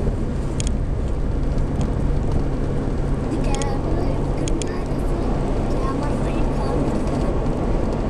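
Steady road and engine noise inside a moving car's cabin at highway speed, with faint voices now and then.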